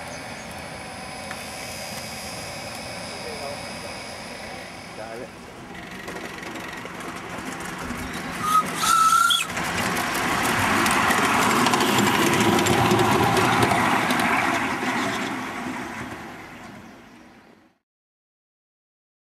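Miniature live-steam locomotive giving a short whistle about eight seconds in. It then runs past close by, a loud busy sound full of rapid clicks that fades out near the end.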